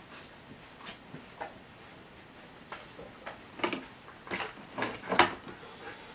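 Irregular sharp clicks and light taps, about eight of them, the later ones louder and fuller, over a faint room hiss.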